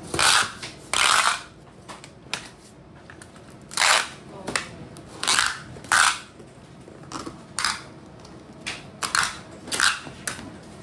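Packing tape being run off a handheld tape dispenser onto a cardboard box: a string of short rasping tape screeches, about eight of them, each under half a second, at uneven intervals.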